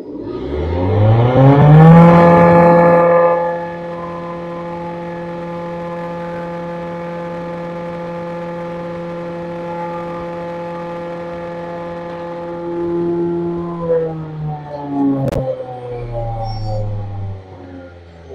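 Belt-driven pulveriser (hammer-type grinding mill) and its electric motor starting up: a whine that rises in pitch over the first two seconds and is loudest then. It runs at a steady pitch for about ten seconds, then winds down with falling pitch from about fourteen seconds in, with a single sharp click near fifteen seconds.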